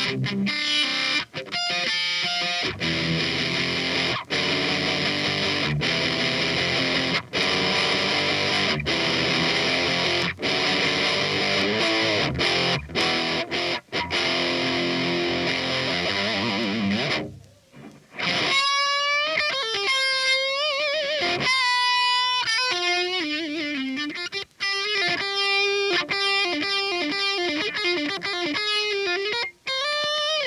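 Electric guitar played through a Laney Cub valve amp head with overdrive. For about the first seventeen seconds it plays distorted chords broken by short stops. After a brief gap come single-note lead lines with string bends and vibrato.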